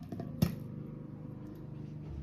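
A single sharp click about half a second in as the metal lid of a small candle tin comes off, followed by a faint steady hum.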